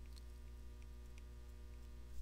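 Steady low electrical mains hum on the recording, with a few faint ticks of a stylus writing on a tablet screen.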